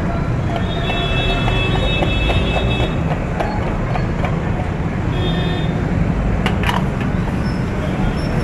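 Steady low rumble of a street-stall wok burner under an iron wok of bubbling gravy, with light sizzling ticks from the wok. A metal ladle clinks against the wok once, about six and a half seconds in.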